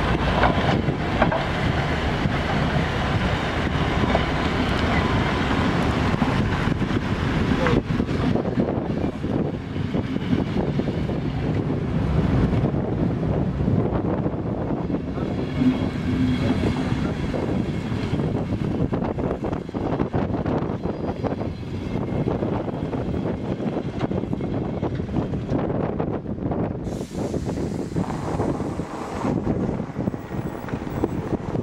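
Vintage passenger carriages of a steam-hauled museum train rolling past at close range: a steady rumble of wheels on the rails with frequent small clicks. Wind is audible on the microphone.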